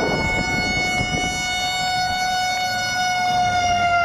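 A horn held in one long, steady note that dips slightly in pitch near the end, over a low rumble.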